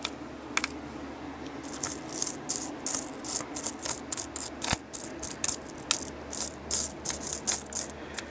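Copper Lincoln cents clinking against one another as fingers push and flip through a loose pile of them. A quick, irregular run of small metallic clicks starts about two seconds in.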